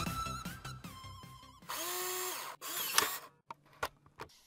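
Intro music fading out, then a short whir of a small electric motor, like a power drill, lasting about a second and winding down at its end, followed by a few sharp clicks.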